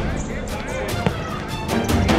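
A single sharp thump of a football on a hard court about a second in, over voices and quieter background music.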